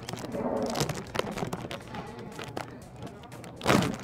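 Plastic bag of tostadas crinkling as it is torn open by hand and teeth: a run of short, sharp crackles, with one louder rustle near the end.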